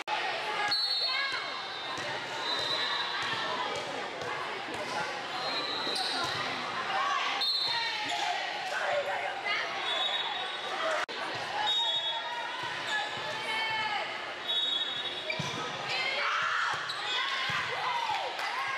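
Indoor volleyball match in a large gym: players' and spectators' voices echoing in the hall, short high sneaker squeaks on the court, and a few sharp knocks of the ball being played.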